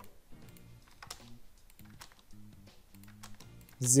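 Computer keyboard typing, a few scattered light clicks, over soft steady background music.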